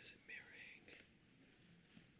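Near silence: room tone, with a faint whispered word in the first second.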